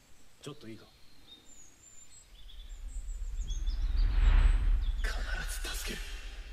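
Animation soundtrack with faint bird chirps, then a deep rumbling whoosh effect that swells and peaks about four seconds in and fades as a voice comes in near the end.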